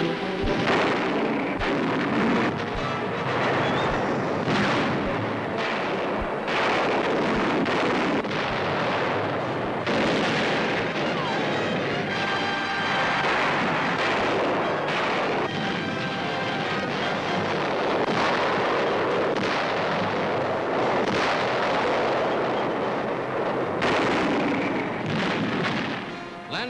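Music mixed with battle sounds: a continuous din of explosions and gunfire, with heavy blasts every second or two.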